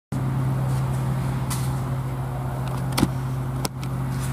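A steady low mechanical hum, with three sharp clicks or knocks over it. The loudest comes about three seconds in.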